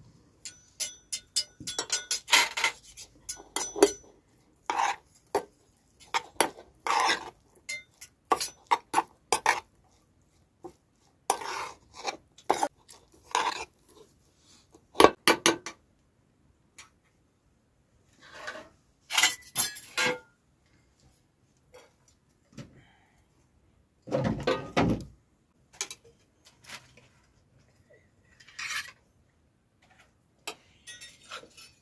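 Metal spoons clinking and scraping against steel bowls and cooking pots as rice and stew are dished out, in short irregular clinks with pauses between them. About four-fifths of the way through comes one longer, fuller handling scrape.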